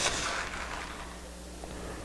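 A brief rustle of a plastic zip-lock bag as a tablespoon digs into the powder inside, right at the start, then only a quiet room with a faint steady hum.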